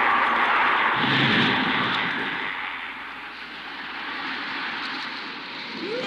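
Cartoon sound effect: a loud rushing noise, strongest for the first couple of seconds and then fading, with a low rumble about a second in and a rising tone starting right at the end.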